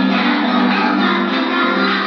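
A group of children singing a song together over musical accompaniment, in steady held notes.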